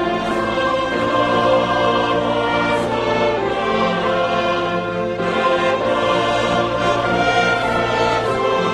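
Church choir singing in held notes, accompanied by a string ensemble of violins and cellos.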